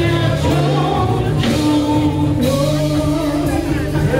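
Gospel worship singing with instrumental accompaniment: voices singing a slow melody over steady held bass notes, with the congregation singing along.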